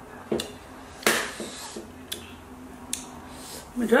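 Mouth sounds of eating a chili- and tajin-coated lime wedge: a few short clicks and smacks of biting and sucking, the loudest about a second in. A voice starts near the end.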